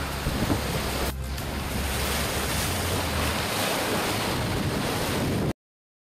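Wind buffeting the microphone over the rush of the open sea on the deck of a racing sailboat at sea: a steady noise with a brief dip about a second in, cutting off suddenly near the end.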